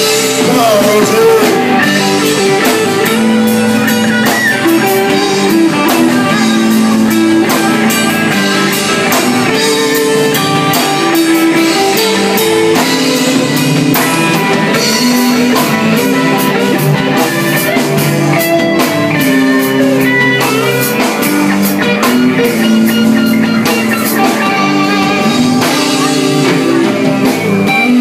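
Live rock band playing loudly: electric guitar, bass guitar and drum kit.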